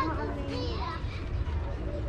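Children's voices in the background, talking or calling briefly in the first second, over a steady low outdoor rumble.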